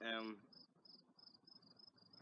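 Cricket chirping: faint, short, high chirps repeating evenly about three times a second.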